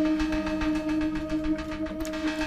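Background music: a steady held drone note that continues without change.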